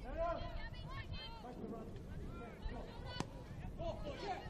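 Footballers shouting short calls to each other across the pitch, with one sharp thud of a football being kicked about three seconds in.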